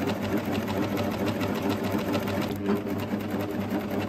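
Coverstitch machine running steadily, stitching a twin-needle hem in an even, fast rhythm over its constant motor hum.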